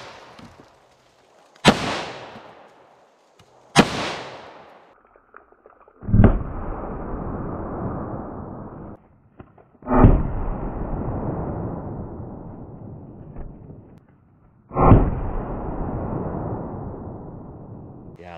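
Taurus 605 revolver firing standard-pressure .38 Special rounds: two sharp shots about two seconds apart, each with a short echo. Then three slowed-down replays of the shots, each a deep boom with a long decay, about four to five seconds apart.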